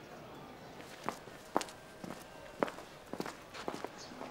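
Footsteps on a hard surface: a few separate steps, spaced at first, then coming closer together near the end.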